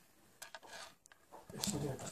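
A quiet room with a few faint, light clicks and handling noises, then a man's voice speaks a word near the end.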